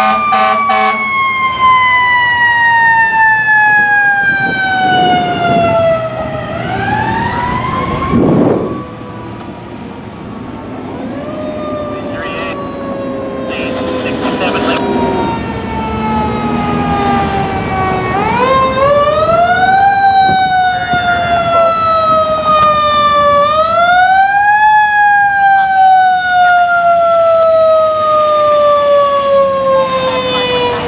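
Fire apparatus mechanical siren winding up quickly and coasting down slowly in pitch, over and over, with a short air-horn blast about eight seconds in.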